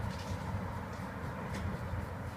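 Porsche 996 Carrera's flat-six engine idling steadily, a low even hum with no change across the moment.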